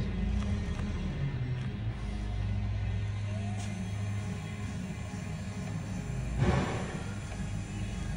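Electric gear motors of 110-volt powered XY welding slides driving the lead screws, a steady low hum as the carriage travels. There is a brief louder noise about six and a half seconds in.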